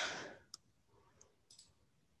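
Faint computer mouse clicks while retrying a screen share on a video call: one sharp click about half a second in, then a couple of lighter ticks.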